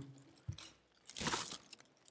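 Thin plastic carryout bag and plastic food packaging crinkling as they are handled, in two bursts: a short one about half a second in and a longer one a little past the middle.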